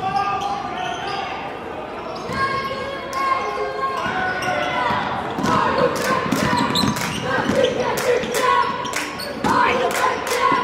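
Basketball dribbled on a hardwood gym floor, with a steady run of bounces about two a second in the second half. Indistinct voices carry on around it.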